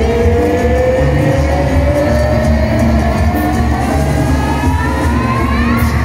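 Live banda sinaloense brass band music over a pulsing bass. A single long held note slides slowly and steadily upward in pitch throughout, climbing faster near the end.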